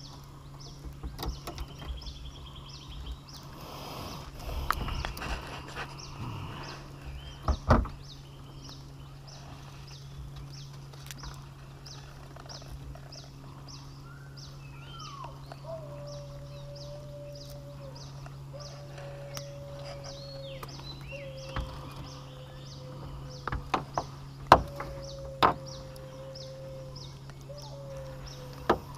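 Tropical riverside forest ambience: insects pulse fast and evenly over a steady low hum. A few sharp clicks and knocks come from handling on the boat, and in the second half a high whistling tone slides down and then holds in several long stretches.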